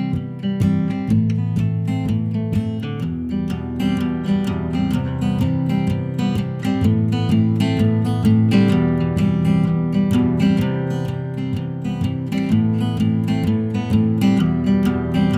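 Solo acoustic guitar strummed in a steady, even rhythm, playing the instrumental intro of a song.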